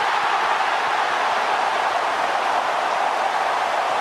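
A steady rushing noise from an animated intro's sound effect, even and without any pitch.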